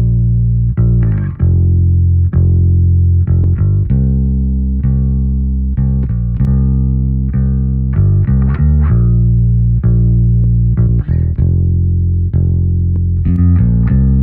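Fender Precision bass played with the fingers, a blend of clean DI and SansAmp signal, heard on its own through the Ampeg B15N amp plugin on its Rock Bass plus Horn preset. It plays a line of sustained low plucked notes, each with a short click at the attack, giving a more polished bass tone.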